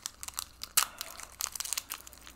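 Foil booster-pack wrapper crinkling and trading cards being handled: a run of short, irregular crackles and rustles, the sharpest about three quarters of a second in.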